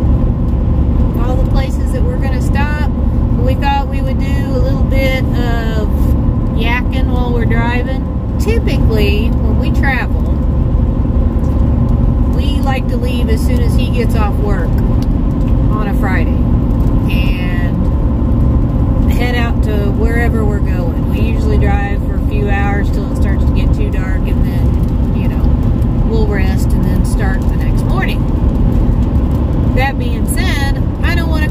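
Steady road and engine rumble inside a moving truck's cabin, with a woman talking over it for most of the time.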